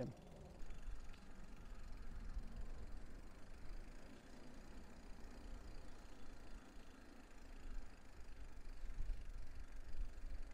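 Wind rumbling on a clip-on microphone while riding a bicycle, with faint tyre and bike noise beneath; the rumble rises and falls unevenly.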